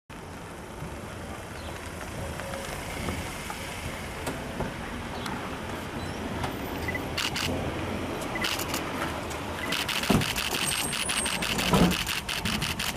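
Van engine running as it drives up and stops, a steady low rumble. Bursts of sharp clicks start about seven seconds in and turn into a rapid run of clicks near the end, with a heavy thump about ten seconds in.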